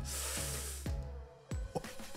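A rush of splashing water, a big wave from a splash-down ride drenching people on a footbridge, hissing loudest at first and dying away within about a second. A few short knocks follow near the end.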